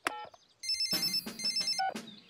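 Cartoon mobile phone: a last keypad beep, then an electronic ringtone trilling in two short bursts as the call rings through.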